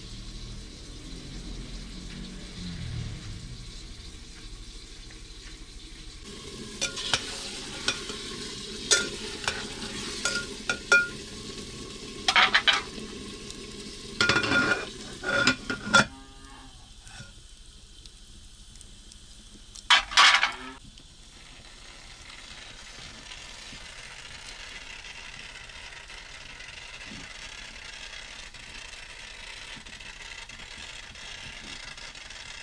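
Eggplant frying and sizzling in a metal pot over a wood fire. A metal utensil scrapes and clinks against the pot in a run of strokes for several seconds, and there is one loud metal clatter about twenty seconds in.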